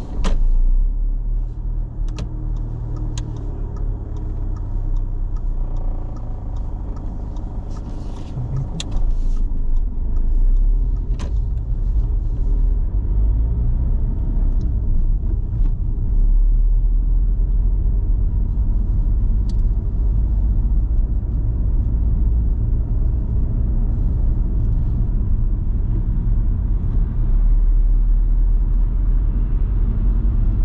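Car interior noise while driving: a steady low rumble of engine and tyres on the road, with a few light clicks early on. It gets louder about nine seconds in and again partway through as the car picks up speed.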